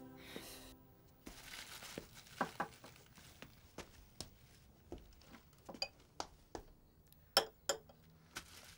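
Kitchen handling sounds: plastic grocery bags rustling and a scatter of light clinks and knocks from jars and dishes on a table, with a couple of sharper clicks near the end.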